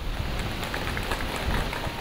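Steady, even rushing noise of a micro-hydro powerhouse's water turbine and generator running.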